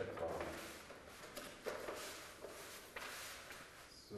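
Quiet rustling and handling of large paper design sheets against a wall, a few soft crinkles and brushes over room tone.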